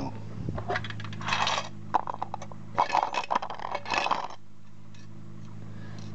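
Small steel parts from dismantled circuit breakers clinking and rattling in several bursts as they are gathered up by hand and tipped into a paper cup for weighing. A steady low electrical hum runs underneath.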